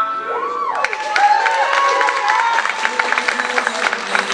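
Audience cheering and applauding. Shouted whoops rise and fall over the first couple of seconds, and dense clapping builds from about a second in.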